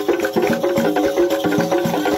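Lively dance music: fast drum strikes under quick, repeated pitched notes.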